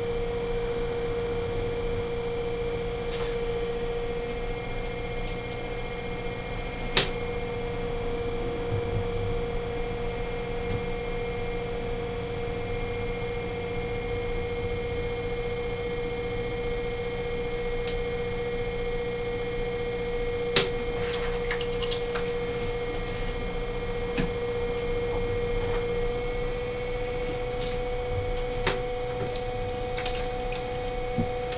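Electric potter's wheel running with a steady hum while clay is shaped on it. Its pitch steps up slightly near the end. A few faint clicks sound over it.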